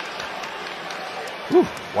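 Steady basketball-arena crowd noise, with a man's drawn-out exclamation of "whew" rising and falling near the end.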